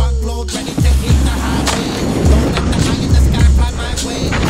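A snowboard scraping and sliding over snow, a rough steady hiss, over a hip hop backing track with a repeating bass beat.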